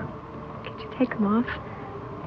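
A man's and a woman's soft wordless vocal murmurs, short pitched sounds that glide up and down about a second in, over a steady faint buzzing hum.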